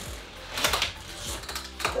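Automatic drywall taper (bazooka) run along a ceiling seam, its drive wheel and tape-feed mechanism clicking and ratcheting as it lays tape and mud.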